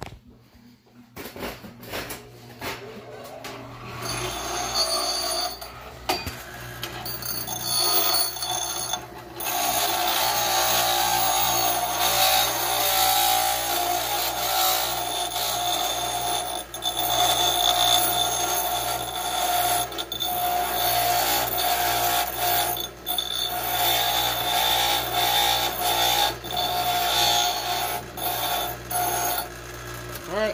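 Bench grinder running, its wheel grinding down high spots of weld built up on a steel snowblower shaft, with a steady ringing whine. The grinding starts about ten seconds in and breaks off briefly every few seconds as the shaft is lifted from the wheel.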